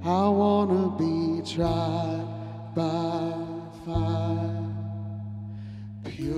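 A man singing a slow worship song in long held phrases, over electric bass guitar and steady low sustained notes.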